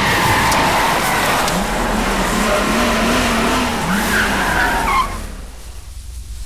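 A car's engine revving with its tyres skidding and squealing as it slides across loose dirt. The sound drops off sharply about five seconds in.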